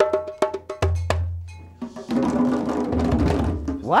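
Djembe hand drums being played: a few separate ringing strokes, then from about two seconds in many drums struck together in a dense patter.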